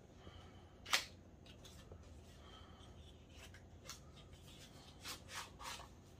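A small cardboard box being opened by hand and a pedal power supply slid out of it: one sharp click about a second in, then faint rubbing of cardboard and a few short scrapes near the end.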